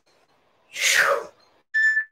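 A woman's forceful, breathy exhale of effort during a weighted squat, one short puff about a second in that falls in pitch. A short, steady high beep follows near the end.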